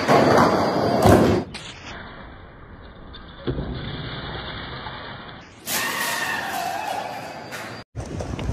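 Skateboard knocks and slams, and a glass pane shattering with a sharp strike about three and a half seconds in as the board rides through it.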